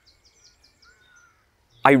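Faint birdsong outdoors: a rapid series of short, high repeated notes with a few softer whistled notes, cut into by a man's voice near the end.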